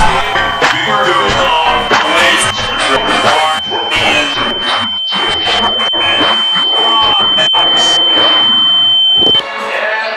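A steady high-pitched electronic tone held over a jumble of music and voices, cutting off suddenly near the end.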